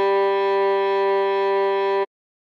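Cello holding one long, steady note, the G of the melody. It cuts off suddenly at the end.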